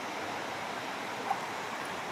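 Steady rushing of a shallow river running over rocks, with one short faint sound just past a second in.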